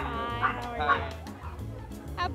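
A small dog yipping twice, about a second apart, over background music.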